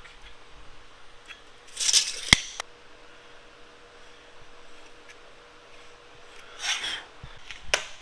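Layout work on steel square tubing: a short scrape of marking about two seconds in, ending in a sharp metallic click, then another short scrape near seven seconds and a second click just before the end. Between them only a faint steady hum of the shop.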